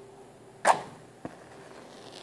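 A wooden match struck once on a matchbox's striker strip: a sharp scrape about two-thirds of a second in as it catches and lights, then a small click shortly after.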